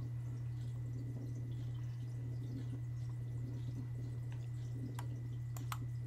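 Quiet room tone: a steady low hum with a faint high whine, then a few sharp clicks about five seconds in as the computer slideshow is clicked on to the next slide.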